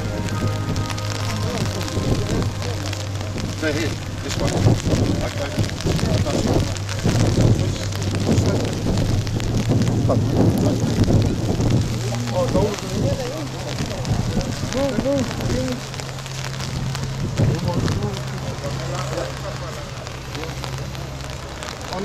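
Rain pattering, with people's voices and a steady low hum underneath.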